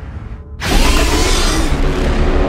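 Horror trailer sound design: a low rumble, then about half a second in a sudden loud noisy hit with bending, whining tones that carries on, marking the cut to the title card.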